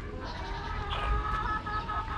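Chickens calling in the background, with a thin, drawn-out call starting about halfway through.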